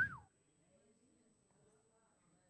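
A single short vocal cry right at the start, its pitch rising and then falling. After it there is near silence, only faint room tone.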